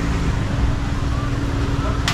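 Busy street ambience: a steady low rumble with a constant hum and faint voices of people nearby.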